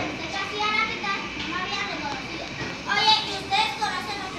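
Children's voices talking over one another, with two louder calls about three seconds in.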